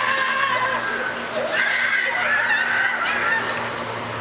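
Repeated loud, held cries, each lasting up to about a second, bunched near the start and again in the middle.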